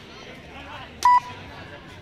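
Electronic beeper sounding short, loud, high beeps at about one a second, with crowd chatter in the background.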